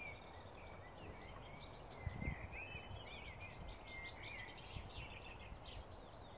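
Several songbirds singing together, a steady run of quick chirps and warbled phrases, over a steady low rumble. A single soft low thump about two seconds in.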